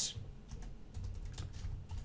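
Computer keyboard being typed on: a quiet, irregular run of key clicks as a sentence is entered.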